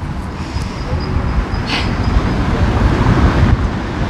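Street traffic: a passing vehicle's low rumble builds to its loudest about three seconds in, then eases.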